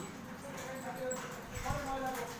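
Faint pitched calls or voices in the background, wavering and broken into short stretches, with a soft low thump about three-quarters of the way through.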